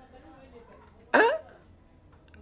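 Speech only: a pause in a sermon, broken about a second in by a single short spoken "hein?" rising in pitch.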